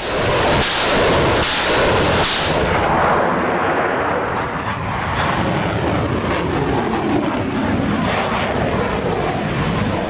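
A battery of truck-mounted multiple rocket launchers firing a salvo. Several sharp launch blasts come in quick succession in the first couple of seconds, followed by a continuous loud rushing roar of rockets streaking away.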